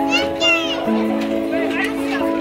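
A young child's high-pitched shout, bending up and down, in the first second, over steady background music of held chords.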